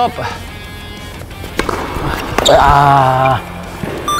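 Tennis ball struck and bouncing on a hard court, heard as a few sharp knocks. These are followed by a loud, drawn-out 'wooah' held at one pitch for under a second.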